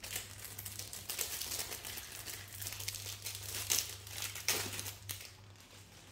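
Phones being handled: a run of light rustles, crinkles and small clicks, over a faint steady low hum.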